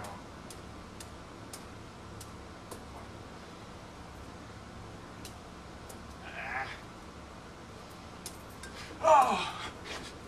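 A short, loud cry that falls in pitch about nine seconds in, after a fainter, briefer cry about six seconds in, in a quiet room with faint light clicks.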